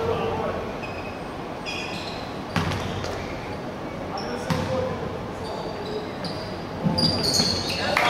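A basketball bouncing a few separate times on a hardwood court, with sneakers squeaking and players' voices in a large hall. Near the end the squeaks and scuffling get busier and louder as players go for the rebound.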